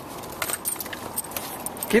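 Small metal pieces jingling and clicking in short, scattered bursts.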